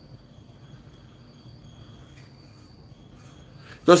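Faint high-pitched insect chirring at two close pitches, coming and going over low background hiss. A man's voice starts right at the end.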